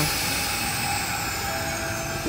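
Steady hum and hiss of electric trains standing at a platform, with a faint high whine slowly falling in pitch.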